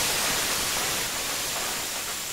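TV static sound effect: a steady, even hiss of white noise with a faint thin high whine, slowly easing off.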